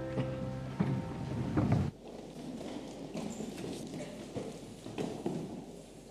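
The last chord of a congregational hymn with piano dies away, then a congregation sits down: thumps, knocks of chairs and shuffling, loudest in the first two seconds and then dropping suddenly to quieter rustling with scattered knocks.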